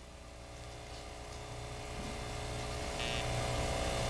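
Steady electrical hum and faint hiss of room noise, slowly growing louder.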